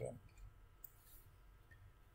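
Near silence with a faint click about a second in, from a computer mouse as the code is scrolled.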